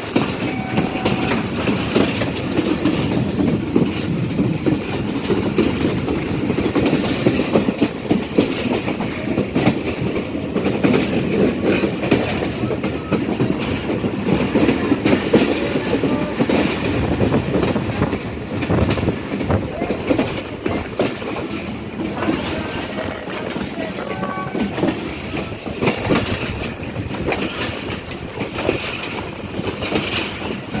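Passenger train running, heard from aboard: a steady rumble of wheels on the rails with rail-joint clickety-clack throughout.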